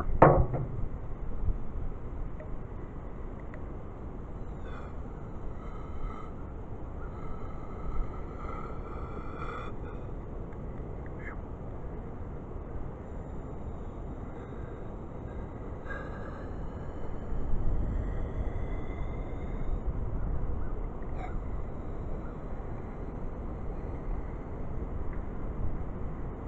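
Can of computer duster held upside down, spraying liquid difluoroethane into a test tube: a faint, thin whistling hiss from the nozzle in two long stretches, from about four to ten seconds in and from about twelve to twenty seconds in, with a few small clicks. Wind rumbles on the microphone underneath.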